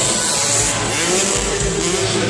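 Freestyle motocross bike's engine revving up, rising in pitch from about a second in, on the run-up to a ramp jump, over a loud arena din.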